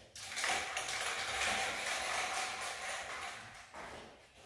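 Aerosol spray-paint can hissing in one continuous spray lasting about three and a half seconds, stopping just before the end.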